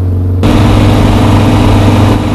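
Innocenti Coupé's small four-cylinder engine running steadily while driving, heard from inside the cabin as a low, even drone. About half a second in, the sound changes abruptly, with more hiss over the same drone.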